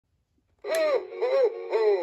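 A 1998 Gemmy Hip Swinging Santa's built-in sound chip starting up: three short syllables in a recorded voice, each rising and falling in pitch, over a steady electronic backing tone. It begins about two-thirds of a second in.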